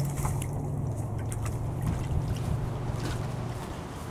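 German shepherd splashing and mouthing at water in a shallow plastic tub, with scattered short splashes. A steady low hum runs under it and stops shortly before the end.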